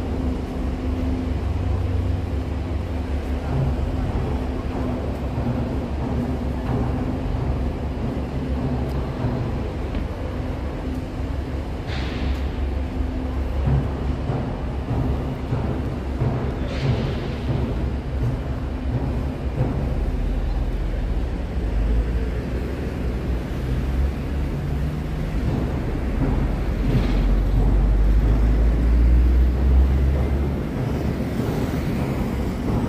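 Steady low diesel rumble of heavy construction machinery, with a few short hisses and the rumble growing louder near the end.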